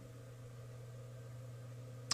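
Faint steady low hum under a light hiss: the background noise of the recording while no one speaks.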